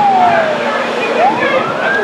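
A siren wailing: one tone that slides slowly down in pitch, turns about a second in, and climbs back up.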